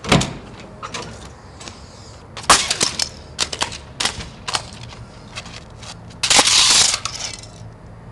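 A plastic VHS tape cassette being stomped and smashed on a concrete sidewalk. There is a sharp crack at the start, a run of snapping cracks from about two and a half seconds in, and a longer, louder crunch near the end.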